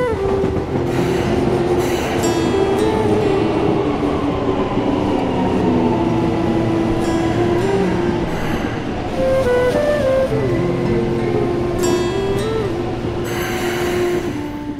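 Metro train running, a steady rumble of wheels on rails with sustained whining tones, under background music.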